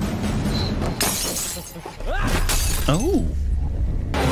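Horror-film sound effects: a sudden crash like glass shattering about a second in and again at two seconds, followed by two eerie tones that rise and fall in pitch.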